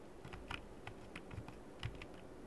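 Faint clicking of computer keys: about six short, separate clicks over two seconds, the loudest near the end, as the lecture slides are advanced.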